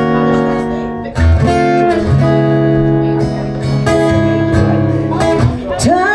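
Acoustic guitar played live as a slow song intro: strummed chords, each left to ring for about a second before the next.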